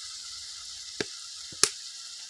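Tomato masala sizzling gently in a metal kadai, a steady hiss, with a steel spoon knocking sharply against the pan twice: once about a second in and again just over half a second later, louder.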